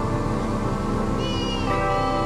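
Organ music: several notes sustained as chords, with a short high tone that wavers and slides downward about a second and a half in.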